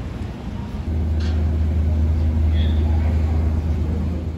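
Police vehicles driving slowly past close by: a steady low engine drone that starts about a second in.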